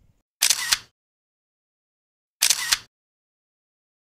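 Camera shutter sound effect, played twice about two seconds apart, each a short burst of about half a second with sharp clicks in it.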